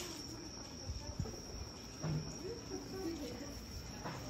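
Crickets chirring: one steady high-pitched tone that goes on without a break, with faint chatter of people in the street beneath it.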